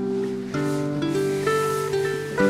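Strings of a Marini Made 28-string bass lap harp, not yet tuned, ringing as the hands brush them while the harp is lifted from its carry bag. A new note sounds about every half second over the slowly fading earlier ones, with a faint rustle of the bag.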